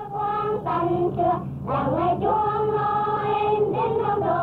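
High voices singing together in a slow melody with long held notes.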